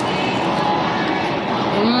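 A woman's closed-mouth "mm" hum of enjoyment while eating, rising and falling in pitch near the end, over a steady noisy background.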